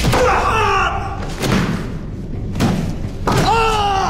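Dull thuds of blows landing, with a man groaning and crying out in pain between them, ending in a loud drawn-out cry.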